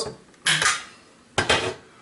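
Airsoft rifle magazine being removed and set down on a wooden table against another magazine: two short, sharp clacks about a second apart.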